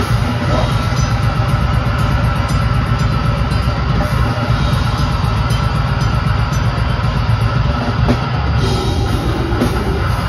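A live metal band playing loud and without a break, drum kit driving throughout, heard from within the crowd in a small club.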